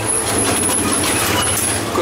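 Driving noise heard inside a moving vehicle's cab: steady engine and road noise, with a thin high whine over it.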